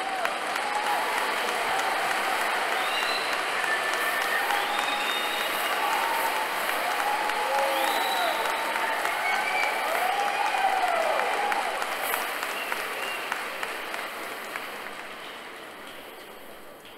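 A large audience applauding, with a few voices whooping and calling out over the clapping. The applause dies away over the last few seconds.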